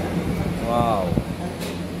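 Workshop background: a steady low hum, with a voice calling out briefly about a second in and a short hiss just after.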